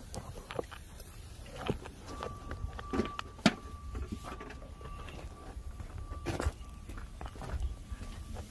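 Scattered clicks and knocks of handling and movement, the loudest about three and a half seconds in, with a faint steady high tone from about two to seven seconds in.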